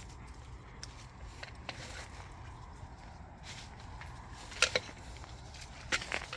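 Footsteps crunching on dry mulch and twigs, a scatter of small crackles with one sharper snap about three-quarters of the way through, over a low steady rumble.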